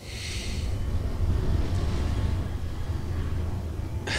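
Deep, steady rumble of a spaceship's engines, a sound effect from the series' soundtrack. It cuts in suddenly with a brief hiss at the start.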